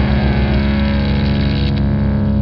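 A rock band's final distorted chord ringing out: electric guitar and bass held on steady low notes while a crash cymbal decays and the high end gradually fades.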